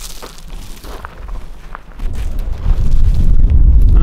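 Wind buffeting the microphone: a low rumble that starts about halfway through and grows loud, with a few faint clicks before it.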